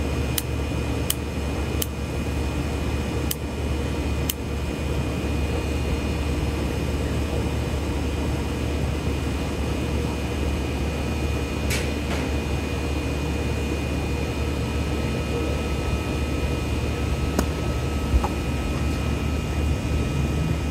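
Steady machine hum and whir throughout, with five sharp clicks in the first few seconds and two more later as a lighter is struck to relight a tobacco pipe.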